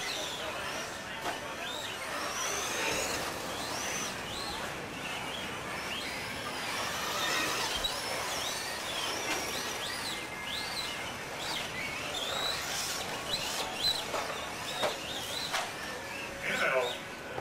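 Radio-controlled stadium trucks racing on a dirt track, their motors giving many short high whines that rise and fall in pitch as the drivers work the throttle, over a steady background of track noise and voices.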